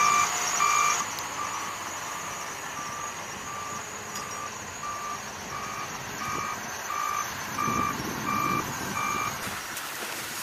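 Reversing alarm of a wheeled loader beeping about two times a second at one steady pitch, over the sound of its engine. The beeps drop to a fainter level about a second in and stop shortly before the end.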